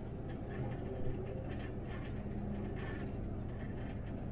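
Cab noise of a MAN Lion's City articulated city bus driving along a road: a steady low hum of drivetrain and tyres, with faint light rattles above it.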